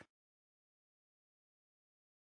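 Near silence: a dead-quiet pause with no background sound at all.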